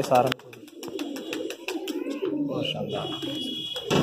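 Domestic pigeons cooing, mixed with a brief word of speech at the start and voices in the background.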